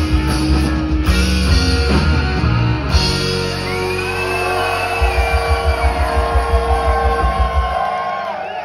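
Live reggae-rock band through a phone in the crowd: electric guitars, bass and drums play loud heavy chords, then hold a note while the drums hit a fast run of kick strikes from about five seconds in. Everything cuts off near the end, as a song's closing flourish.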